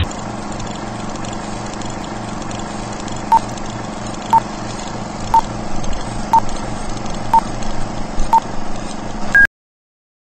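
A series of short electronic beeps about one a second, six at the same pitch, then a single higher beep, over a steady hiss and low hum. The sound then cuts off abruptly.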